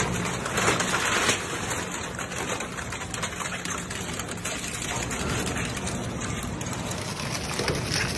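Twin-shaft shredder with hooked blades crushing and tearing a white panel: a dense crackling, crunching noise, loudest with a few sharper cracks in the first second or so, then grinding on more evenly.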